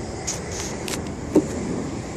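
Steady outdoor background noise, a low even rumble, with a few brief faint clicks.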